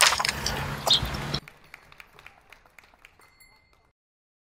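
Outdoor ambient noise with a few sharp knocks, cutting off suddenly after about a second and a half. Then only faint scattered clicks and a short, high ping fade away.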